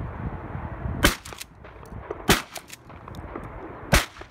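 Three shotgun shots fired in quick succession at a dove in flight, about a second and a quarter and then a second and a half apart.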